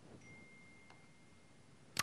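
Near silence in a pause between sentences, crossed by a faint, thin, steady high-pitched tone for about a second and a half, with a soft click about a second in and a short sharp sound at the very end.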